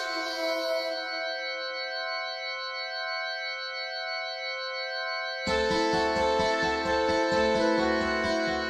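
A sustained keyboard chord, organ-like, held steady for about five seconds. Then a fuller band texture comes in suddenly, with bass and drums pulsing in a fast, even rhythm.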